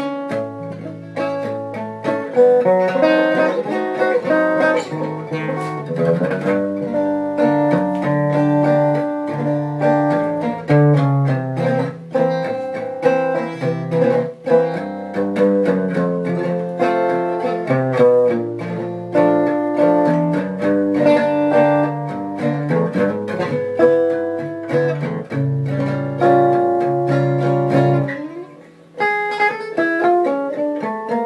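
A Marco La Manna acoustic guitar fitted with an Antonio Surdo pickup, played solo and amplified clean through a Laney AC35 amp: a continuous passage of chords and melody, with a brief pause about a second before the end.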